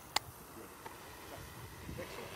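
A DJI Matrice 300 quadcopter hovers some way off, its rotor sound faint under a low, steady noise. A single sharp click sounds just after the start.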